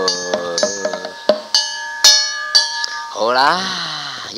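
Cantonese lung-chau (dragon-boat song) percussion interlude between sung lines: a small hand gong rings on, with several sharp strokes of gong and drum over about three seconds. The singer's last sung note trails off in the first second.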